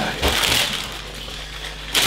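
Rustling and handling noise from parts bags and boxes being moved on the table, with a soft knock about a quarter second in, then quieter rustling.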